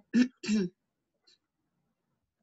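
A person clearing their throat in two short voiced bursts, both within the first second.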